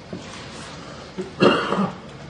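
A person gives one short cough about one and a half seconds in, after a faint tap near the start.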